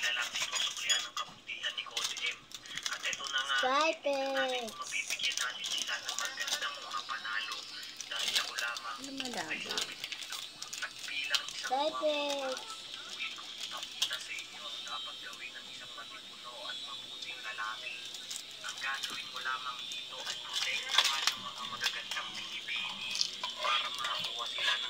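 Plastic cracker wrapper crinkling as a pack of Sky Flakes crackers is handled and opened, and crackers are broken over a bowl of cereal. A few short rising-and-falling voice sounds are heard about four, nine and twelve seconds in.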